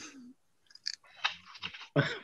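Faint, broken voice sounds and small clicks coming through a video call's audio. A voice tails off at the start, and short murmured fragments follow near the end.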